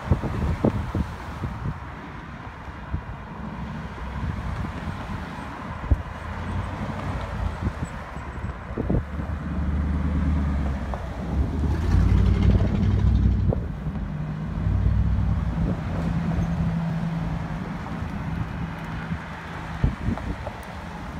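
Cars passing one after another at steady speed, their engine and tyre noise swelling and fading as each goes by, loudest a little past the middle. There are a few sharp knocks near the start, and a steady low hum near the end.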